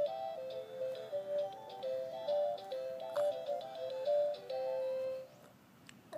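Electronic tune from a Fisher-Price ride-on toy's speaker: a simple melody of stepped single notes that stops about five seconds in.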